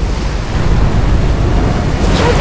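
Tsunami floodwater surging: a loud, steady rush of water over a deep rumble.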